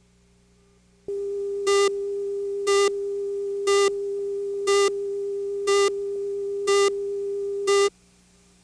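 Videotape countdown-leader line-up tone: a steady mid-pitched tone starts about a second in. A louder, brighter beep sounds on top of it once a second, seven times, and everything cuts off suddenly at the end as the countdown reaches the start of the programme.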